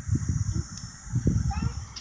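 Irregular rumbling wind buffeting and handling noise on a phone's microphone, with a child's voice briefly near the end.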